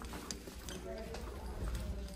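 Footsteps on a hard floor, about three steps a second, with faint voices in the background.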